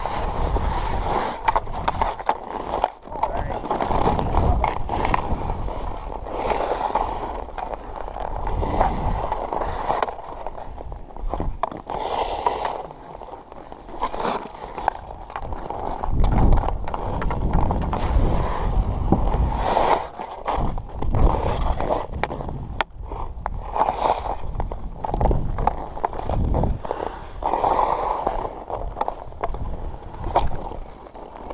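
Ice skate blades gliding, carving and scraping across snow-dusted rink ice in a steady run of strokes, with scattered sharp clicks and knocks of hockey sticks.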